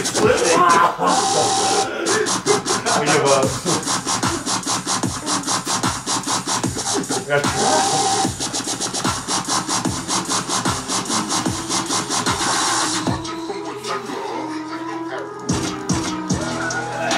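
Background electronic music with a fast, steady beat; the high, crisp part of the beat drops out about thirteen seconds in and the music thins.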